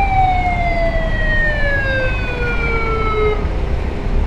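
A siren wailing once: its pitch falls slowly and steadily and dies away about three and a half seconds in. Under it is the steady low rumble of a motorcycle riding in traffic.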